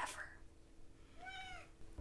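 A cat meowing once, faintly: a single short call just past the middle that rises and then falls in pitch.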